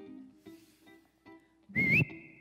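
Sparse plucked string notes ringing out, then near the end a short loud whistle that wavers upward and settles on a steady high note.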